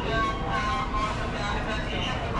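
Station concourse background: indistinct voices over a steady low rumble.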